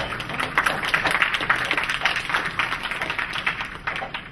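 Audience applauding, many hands clapping at once, swelling after the start and thinning out near the end.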